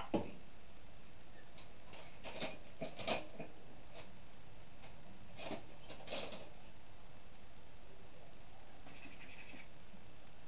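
A few light clicks and knocks, about four, spread over several seconds, from cookware and kitchen items being handled, over a steady background hiss.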